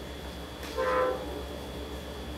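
Distant train horn: one short blast of about half a second, a bit under a second in, over a low steady hum.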